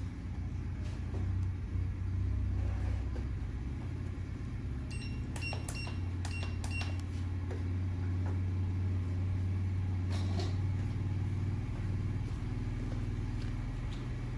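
A steady low machine hum throughout. About five seconds in there is a quick run of about half a dozen short, high electronic beeps, and near ten seconds a single soft click.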